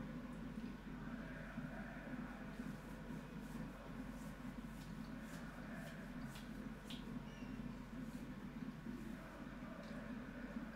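Faint, steady low room hum with a few light, scattered clicks.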